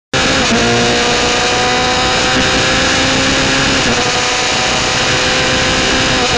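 Norma MC20F sports prototype's engine at high revs under full throttle, heard onboard over wind rush. It shifts up twice, about half a second in and about four seconds in, as the car accelerates.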